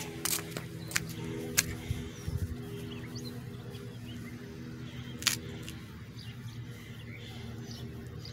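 A steady low mechanical hum from an unseen machine, with a few sharp clicks, the loudest about five seconds in.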